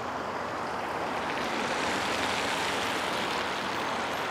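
A minivan driving past and away along a wet street: a steady hiss of tyres on the damp road that swells about halfway through and then eases slightly.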